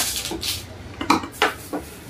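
A small blade slicing and scraping through the plastic wrapping of a parcel: about five short scraping strokes, roughly every half second.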